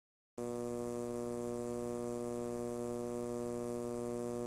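Steady electrical buzzing hum on a VHS tape transfer, playing over a stretch of blank, snowy tape. It starts abruptly a fraction of a second in.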